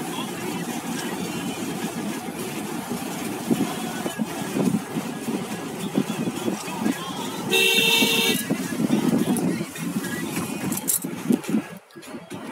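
Steady road and wind rumble inside a moving car's cabin, with a vehicle horn sounding once for about a second a little past halfway.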